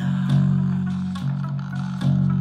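Electric bass guitar playing long, held low notes along with the song's recorded backing, which has drums. The bass note changes about a quarter second in and again a little past the middle.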